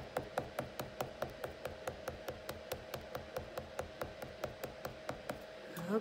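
Wax crayon tapped against paper on a desk in a quick, even series of small ticks, about five a second, dotting on sparkles; the tapping stops near the end.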